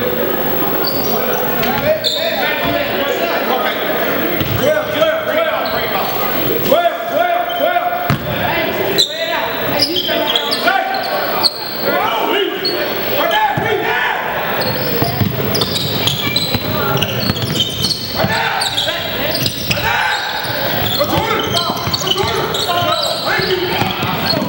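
Basketball bouncing on a hardwood gym floor during a game, with players' and spectators' voices carrying through the hall and short, sharp knocks scattered throughout.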